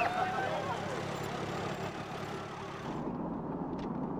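Outdoor street noise with scattered voices as a parade passes, then, about three seconds in, the steady low road rumble inside a moving car's cabin.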